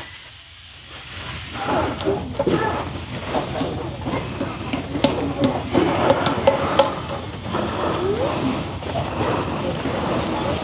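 Background chatter of people talking at a distance, with a few sharp knocks and clicks, over a thin steady high whine.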